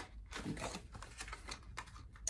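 Faint, irregular crinkling and small clicks of a paper-and-card sleeve being handled and opened around a light bulb.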